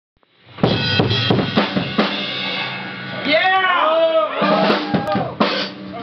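Drum kit struck loosely several times, kick and snare hits with ringing in the room, then a man's voice speaking, with another drum hit near the end.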